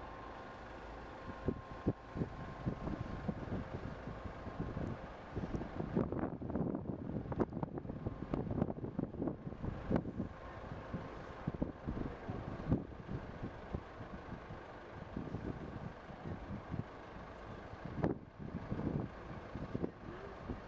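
Outdoor construction-site ambience: wind gusting on the microphone in irregular surges over a low, steady rumble of heavy machinery.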